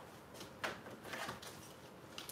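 Faint rustling and a few light clicks of plastic-cased stamp and die packages being picked up and handled.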